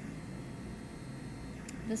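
Quiet, steady room hum with no distinct sounds standing out.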